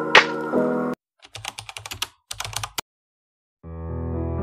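Quick, irregular clatter of computer keyboard typing, used as a sound effect, lasting about a second and a half; before it an intro music clip with a whoosh cuts off abruptly, and new music fades in near the end.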